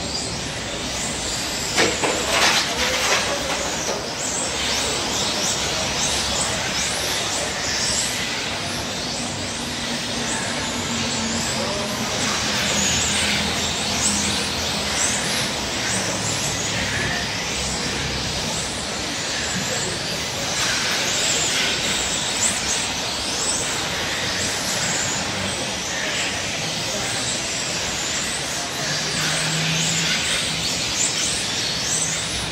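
Electric radio-controlled touring cars, a Serpent X20 FWD among them, racing together: their motors whine in many overlapping high pitches that rise and fall as the cars accelerate and brake through the corners. A few sharp knocks come about two seconds in.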